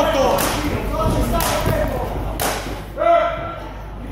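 Boxing gloves landing on a fighter at close range: a few sharp thuds over about two and a half seconds. A man shouts loudly near the end.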